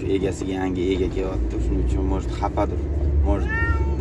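A man talking in a car's cabin, drawing out one word into a long rising-and-falling glide near the end, over the car's low rumble.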